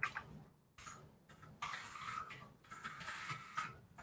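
Faint typing on a computer keyboard: short, irregular runs of key clicks with brief pauses between them.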